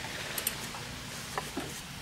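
Low steady background hiss with two faint light clicks, about half a second in and again near a second and a half.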